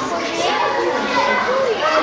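A group of children all talking at once: overlapping chatter and calls of young voices.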